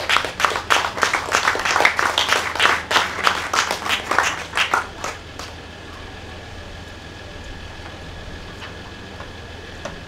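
A small audience clapping, dying away about five and a half seconds in, leaving a low steady background hum.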